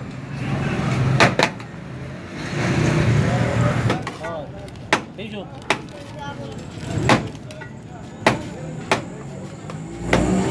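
Meat cleaver chopping cooked meat on a large metal platter: about seven sharp, irregularly spaced knocks over a steady din of voices and street traffic.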